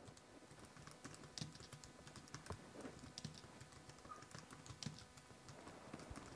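Faint typing on a keyboard: light, irregular key clicks.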